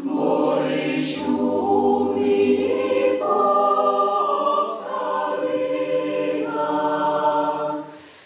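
Mixed choir of women's and men's voices singing in harmony, holding chords that change every second or so.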